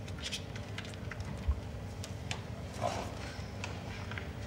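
Scattered light clicks and a soft thump about halfway through as a microphone and its cable are handled and plugged at a laptop, over a steady low hum.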